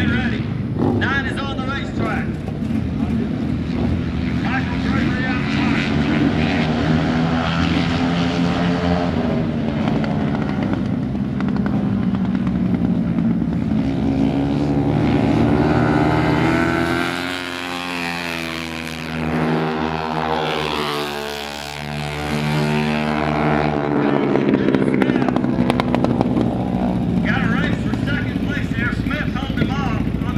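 Dirt flat-track racing motorcycles running hard, their engine notes rising and falling as the bikes are throttled through the turns and pass by. In the middle stretch the pitch sweeps clearly down and then back up as bikes go past close by.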